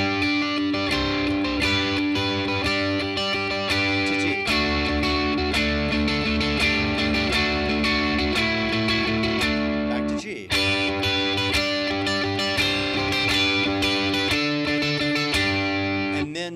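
Electric guitar played through a tube amp: picked, ringing notes outlining a G chord and then a D chord shape around a barred index finger. The chord changes about four and a half seconds in, and again just after ten seconds following a brief break.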